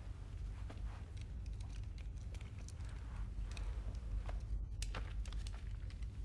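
Low steady rumble of room tone with scattered faint clicks and rustles of small handling movements.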